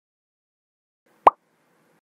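A single short editing pop sound effect, a quick upward-rising 'bloop', about a second in, the kind that marks an on-screen pop-up graphic appearing.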